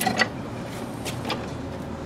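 The steel lock pin and blade pivot of a Meyer PathPro snow plough clicking as the pin is lifted and the blade swung to a new angle, a few sharp metal clicks, two near the start and two more about a second in.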